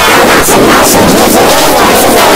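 Loud, heavily distorted and clipped edited sound effect: a dense wall of noise with a garbled, voice-like texture, held at a steady level.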